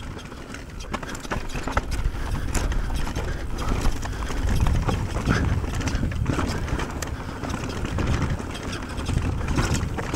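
Raw audio from a DJI Osmo Action 3's built-in microphone on a mountain bike descending a dirt trail: a steady low rumble of wind and tyre noise, with scattered clicks and knocks as the bike rolls over rocks and roots.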